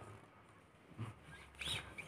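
Mostly quiet room with two faint, short handling sounds, one about a second in and one near the end, as a hand works the controls of a Positive Grid Spark Go portable guitar amp.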